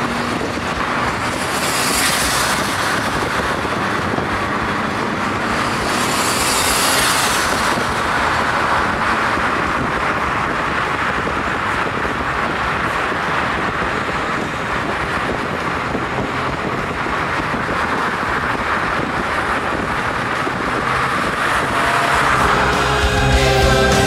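Steady road and engine noise of small cars driving together, heard from a moving car with an open window. There are two brief hissing swells, about two seconds in and about seven seconds in.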